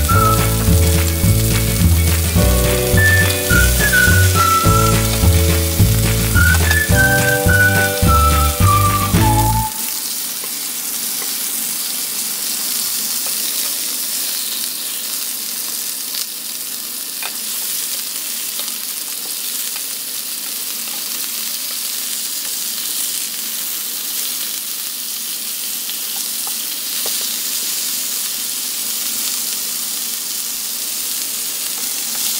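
Background music, a whistled tune over a bass beat, for about the first ten seconds, cutting off suddenly. Then a steady sizzle of chicken breasts searing in olive oil in a frying pan, with a couple of faint taps as they are turned with a wooden spatula.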